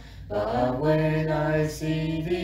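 Slow hymn singing: after a brief breath at the start, the voice holds long, steady notes.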